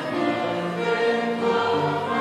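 A choir singing a hymn, the voices holding sustained notes.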